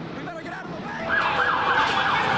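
Emergency-vehicle siren cutting in about a second in, sweeping up and down in quick cycles of about four a second: a yelp.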